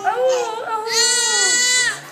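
Young infant crying hard after having her ears pierced, with a long, high wail in the second half that breaks off just before the end.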